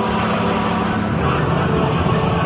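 Bugatti Veyron's quad-turbocharged W16 engine running at a steady, held speed as the car circles the banking at about 200 km/h, before the driver accelerates.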